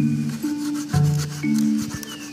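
Background music of held, ringing notes. Under it, from about half a second in, a run of quick rasping strokes: a knife blade scraping into a wooden log.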